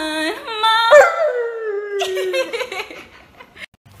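Husky howling in long, drawn-out notes that step up and down in pitch, then about a second in a loud howl that slides slowly downward.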